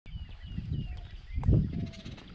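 Outdoor morning ambience: an uneven low rumble that swells about one and a half seconds in, with a few faint, high, falling bird chirps in the first second.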